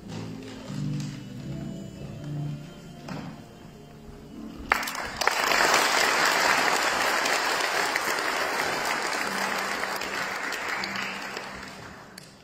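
Quiet music, then an audience breaks into applause about a third of the way in, clapping steadily for several seconds before fading out near the end.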